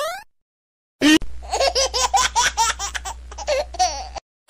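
A short rising glide sound effect ends right at the start. After about a second of silence comes high-pitched laughter in quick repeated 'ha' pulses, a dubbed laugh sound effect, with a low hum underneath.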